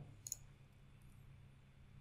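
Near silence with a faint computer mouse click: two quick ticks close together about a third of a second in, a button press and release.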